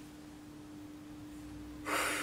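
Low, steady background hum, then near the end a man's short, breathy breath between lines of dialogue.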